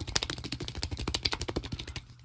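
Small rubber toy figurines rattling inside a clear plastic capsule sphere as it is shaken by hand: a fast, dense clicking clatter that stops at the end.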